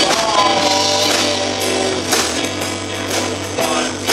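Live rock band playing: strummed acoustic guitar and electric bass guitar, with a man singing at the microphone.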